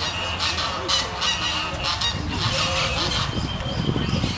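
A flock of birds calling, many short calls overlapping without a break.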